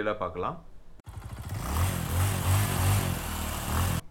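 Motorcycle engine running under a broad rush of wind noise, starting abruptly about a second in, with a low, pulsing engine beat.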